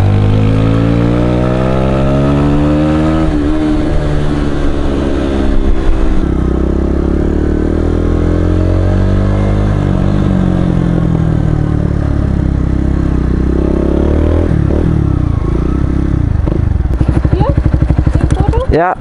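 2015 Honda CBR125R's single-cylinder four-stroke engine, fitted with an IXIL Hyperlow aftermarket exhaust, pulling away with its pitch rising and dropping at gear changes. It then falls as the bike slows and settles into an evenly pulsing idle near the end.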